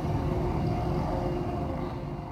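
Curfew siren sounding a steady held tone over a low rumble of city noise: the signal that brings in the curfew for minors.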